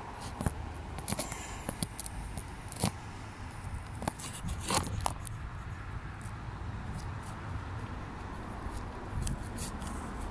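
Handling noise from a handheld phone camera: fingers shifting on the body near the microphone, giving scattered clicks and short scrapes over a steady low rumble.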